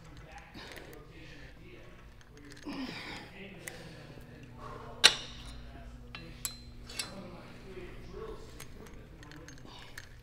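Metal clinks from a cable machine's weight stack as it is handled: one sharp, loud clink about halfway through, then two lighter clinks with a brief metallic ring.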